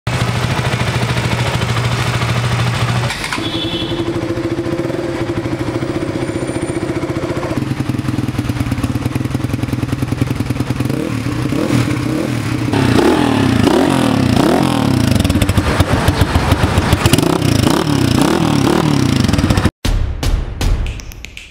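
Motorcycle engines running in several short clips cut one after another. First a steady idle, then, from about eleven seconds, the throttle is blipped again and again, so the revs rise and fall repeatedly.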